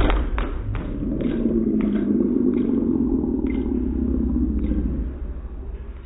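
A loud thud as a high kick strikes a small hanging punching bag, followed by a string of fainter knocks that thin out over the next few seconds as the bag swings, over a steady low rumble.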